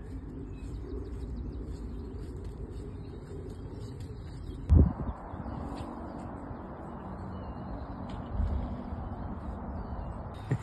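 Small birds chirping faintly over a steady low rumble, with one sharp thump about halfway through and a softer bump near the end.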